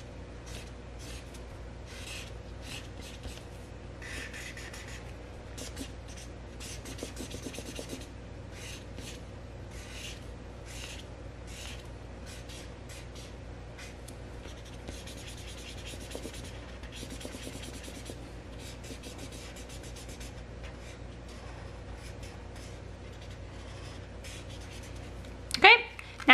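Felt-tip marker scribbling on paper in many quick, short back-and-forth strokes while colouring in, over a faint steady hum.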